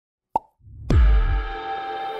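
Intro sting: a short sharp click, then a low swell building into a loud deep hit that drops in pitch about a second in, settling into a held chord of steady tones.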